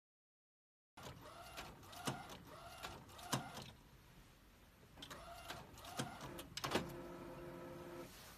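Kingdom DTF printer printing onto transfer film: the print-head carriage shuttles back and forth, each pass a whirring sweep with a click as it reverses, starting about a second in. A short lull comes near the middle, and a steady motor whine sounds near the end as the film feeds out.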